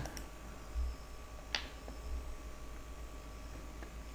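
Quiet room tone with a steady low hum, broken by a soft thud just under a second in and a single faint click about a second and a half in.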